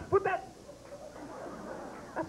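A short, high-pitched exclaimed word from a stand-up comedian, then soft, murmuring laughter from a comedy club audience.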